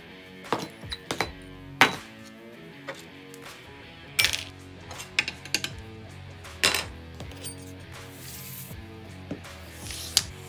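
Background music, with a handful of sharp clinks and knocks from small ceramic cups and bowls being picked up and set down on a workbench.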